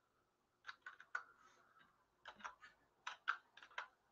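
Typing on a computer keyboard: faint keystrokes in three short runs of a few clicks each, with brief pauses between.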